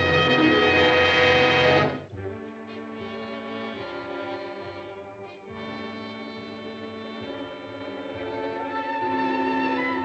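Orchestral film-score music. A loud brass-led passage ends abruptly about two seconds in, and quieter strings and orchestra carry on with held notes.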